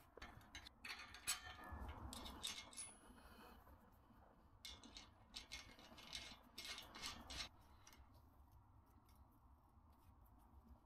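Faint, irregular small metallic clicks and clinks of a steel bolt and nut being fitted by hand into a galvanised sheep hurdle's hinge bracket, dying away about seven and a half seconds in.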